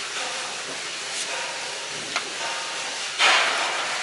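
Sandpaper on a hand sanding block rubbing over a varnished wooden floorboard, a steady scratchy hiss with a louder stroke about three seconds in: the varnish being sanded back between coats.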